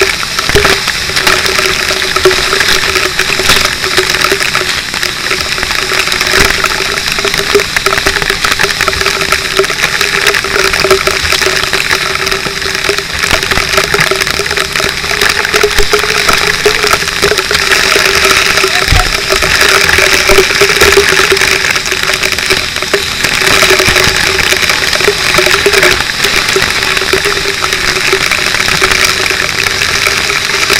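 Fire hose water spraying in a loud, steady rush, with spray splashing close around, over a steady mechanical drone typical of the fire engine's pump running.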